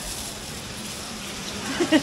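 Steady background hiss with no distinct events, and a brief bit of voice near the end.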